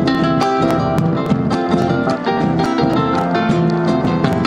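A chacarera played live on concert harp and acoustic guitar, with a bombo legüero drum beating the rhythm in steady sharp strokes under the plucked notes.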